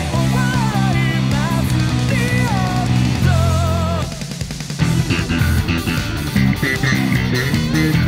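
Fast rock song with a singer, electric bass played fingerstyle, guitars and drums. About four seconds in the band briefly drops away, then comes back in with the bass and crashing cymbals.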